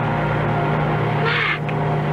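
Steady drone of a light single-engine aircraft's engine, the radio-play effect for a Cessna 172 in flight, under the fading held tones of a dark music cue. A short burst of hiss comes about one and a half seconds in.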